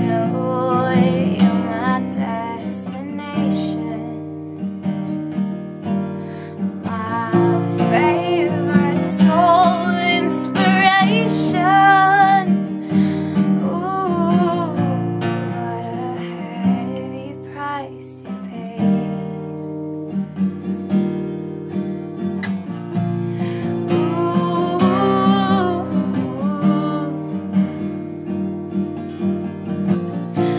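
Acoustic guitar strummed in a steady accompaniment, with a woman's voice singing over it in two stretches, about a quarter of the way in and again in the last third.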